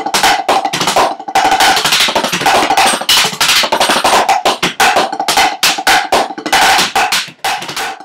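Drumsticks playing fast runs of strokes on a set of rubber practice pads, with a ringing tone under the stick hits and a short break near the end.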